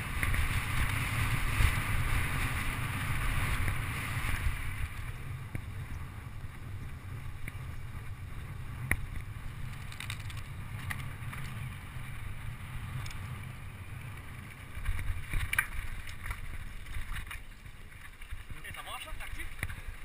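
Wind rumbling on a mountain-bike camera's microphone as the bike rolls fast over a dirt trail, with tyre noise and the bike rattling, plus a few sharp knocks over bumps.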